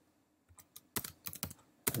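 Typing on a computer keyboard: separate keystroke clicks that begin about half a second in, sparse at first, then quicker in the second half.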